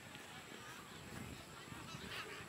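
Faint distant voices and calls from players and spectators around a rugby pitch, over a low rumble.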